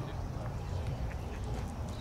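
Open-air ballpark ambience between pitches: a steady low rumble of wind on the microphone, with faint distant voices.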